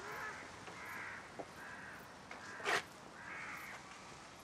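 Faint bird calls in the background, a similar call repeating about once a second, with one short, louder sound about two-thirds of the way through.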